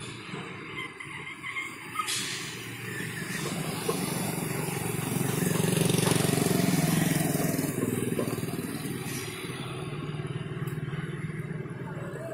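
A heavy vehicle engine running steadily, swelling louder about halfway through and then easing off, with two short knocks before it swells.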